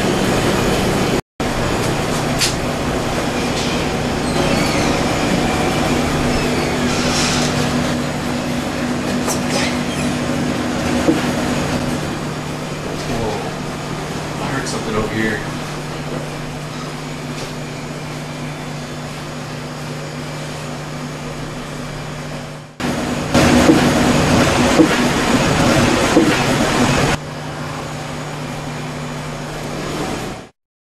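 A steady low hum, with a few faint clicks and knocks and low, hushed voices. Near the end the sound cuts to a louder, busier stretch that stops abruptly.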